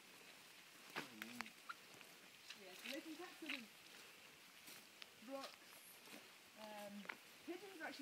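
Quiet, indistinct talking in snatches, with a few sharp clicks about a second in.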